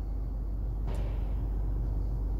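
Jaguar XF 2.0-litre diesel engine idling steadily in Park at about 750 rpm, heard from inside the cabin as a low hum. There is a faint tap about a second in.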